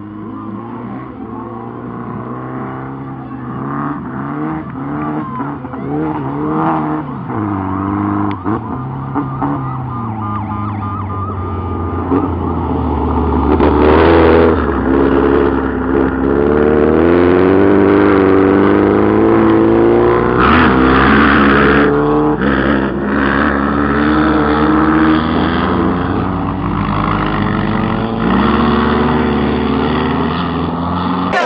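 Mud-racing vehicle's engine revving hard as it churns through mud, the pitch rising and falling again and again. It grows louder over the first half as it comes closer.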